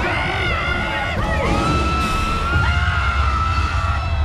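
Heavy low rumble from a theme-park ride's earthquake special effects, with riders screaming and yelling over it and music underneath. A rushing hiss joins about halfway through.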